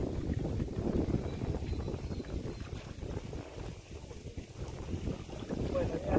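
Wind buffeting the microphone: an uneven, low rumbling rush that rises and falls.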